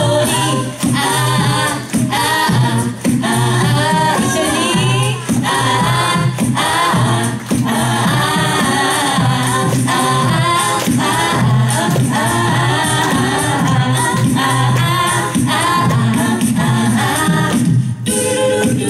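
Mixed a cappella group of six voices singing into microphones: several voices in harmony over a sung bass line, with no instruments.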